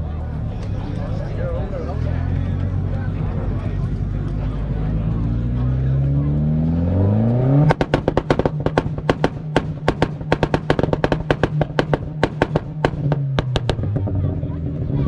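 A car engine running, then revved up steeply and held on a two-step launch limiter. From about eight seconds in it fires rapid, irregular exhaust pops and bangs for several seconds. It is loud.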